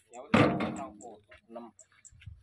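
A sudden heavy thump about a third of a second in, mixed with a man's voice, followed by short bits of men's talk.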